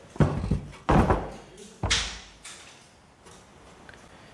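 Heavy chrome rear bumper assembly of a 1964 Ford Thunderbird being tipped over and laid flat on a wooden workbench: three clunks of metal on wood, about a second apart, in the first two seconds, each with a short ringing tail.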